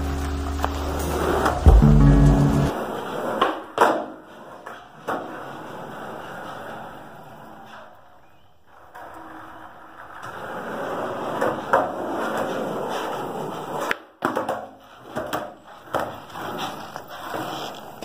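Skateboard wheels rolling on a concrete floor, swelling as the board passes close, with several sharp clacks of the board. The last notes of a guitar song end a few seconds in.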